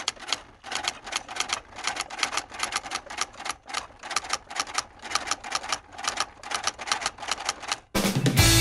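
Typewriter sound effect: a rapid, uneven run of keystroke clicks, about five or six a second, stopping near the end.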